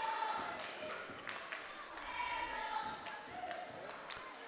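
Gymnasium sound during a basketball game: crowd voices with several short, sharp knocks of the basketball bouncing on the floor.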